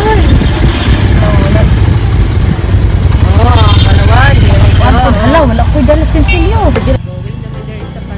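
Motorcycle ride: a steady low rumble of engine and wind buffeting the microphone, with voices over it. The rumble cuts off suddenly near the end.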